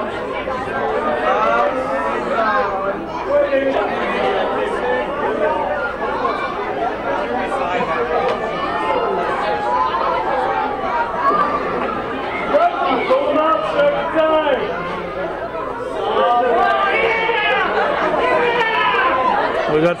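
Crowd chatter: many voices talking at once, echoing in a large indoor pool hall.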